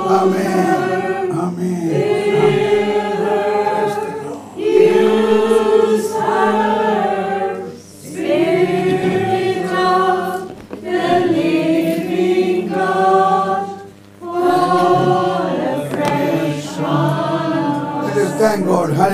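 A group of voices singing together in long held notes, in phrases of about three to four seconds with short breaks between them.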